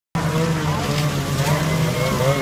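Snowmobile engines running steadily as the sleds approach, with people's voices over them.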